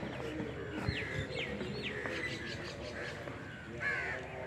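Birds calling outdoors: a run of short calls that each slide down in pitch, several in quick succession in the first two seconds, over steady background noise.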